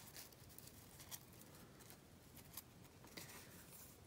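Faint crinkling and rustling of a fringed strip of stiffened 180g crepe paper being unfolded by hand, in a few soft, short strokes.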